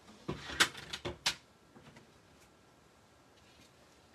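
A short run of sharp clicks and knocks from hard objects being handled on a craft table, the loudest two about half a second apart in the first second or so, then a few faint ticks.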